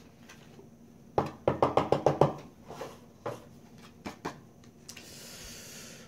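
Fingernail scratching and handling of a paper scratch-off card: a quick run of about eight sharp strokes a little over a second in, a few scattered taps, then a soft rustle near the end.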